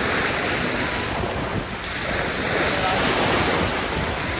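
Small waves breaking and washing up a sandy beach in a steady surf wash, dipping briefly a little before the middle and then building again.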